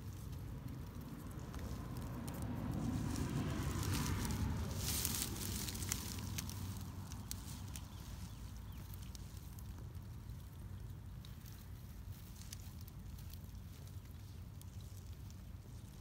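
A hand reaching into shallow stream water and stirring it, with a brief splash about five seconds in, over a low rumble of wind or handling noise on the microphone.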